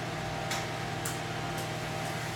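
Steady low mechanical room hum with three faint ticks about half a second apart.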